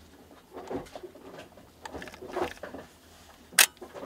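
A Canon EOS 6D camera body handled with cotton-gloved hands: soft rubbing and rustling against the body and controls, then one sharp click near the end.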